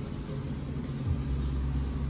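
A low, steady background rumble.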